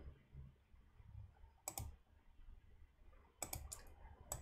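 Computer mouse clicking over near silence: a pair of clicks just under two seconds in and a quick run of clicks near the end.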